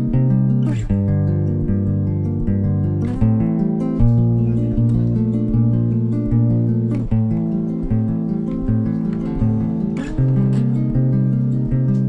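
Acoustic guitar played as a song intro, steady chords ringing with no singing. A sharp percussive hit lands about every three seconds.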